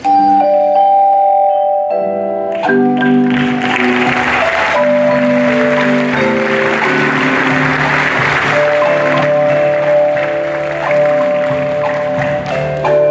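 Marimbas played with mallets, starting suddenly with held, rolled notes that move in chords. A steady hiss-like wash of percussion joins about three seconds in.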